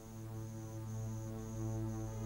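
A low, steady humming drone from the background score, swelling in loudness, with a cricket chirping high above it about twice a second.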